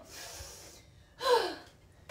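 A woman's breathy exhale, then a single short vocal gasp that falls in pitch, a little over a second in.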